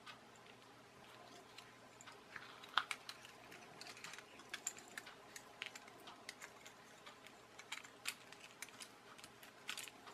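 Faint, irregular clicks and light taps of small plastic parts as a wall-climbing toy car is handled and taken apart, with a sharper click about three seconds in and another near the end.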